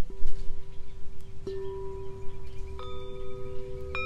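Singing bowls struck one after another, four strikes, each ringing on in long steady tones so the notes pile up and overlap. A low rumble of wind on the microphone sits underneath.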